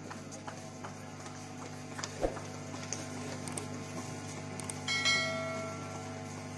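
A lull in the singing: a steady low hum with faint scattered clicks, a single thump about two seconds in, and a short ringing tone around five seconds in.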